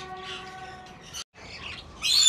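Budgerigars chirping and chattering faintly in an aviary, over a faint steady hum. The sound drops out completely for a moment a little past a second in.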